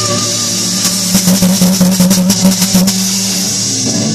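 Live rock band playing loud: a distorted electric guitar holds one long low note from about a second in until near the end, over drum and cymbal hits.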